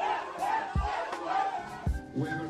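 Several people shouting and cheering excitedly in celebration, over background music with a low beat thumping about once a second.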